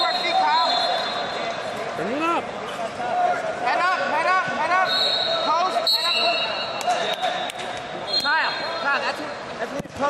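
Wrestling shoes squeaking on the mat in short, repeated chirps as the wrestlers scramble, over the steady background noise of a large, busy hall.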